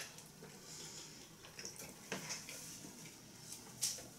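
Faint chewing and mouth sounds of two men eating pizza, with a few soft clicks, the sharpest one near the end.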